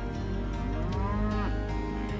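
Black Angus cattle mooing: one long call that rises and then falls in pitch, over soft background music.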